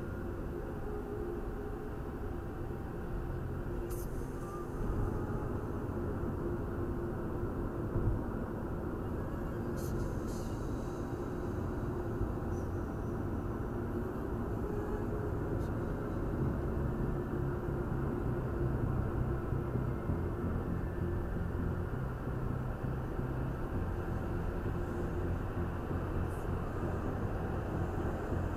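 Steady road and engine rumble inside a Mercedes car's cabin at motorway speed, with a few faint ticks.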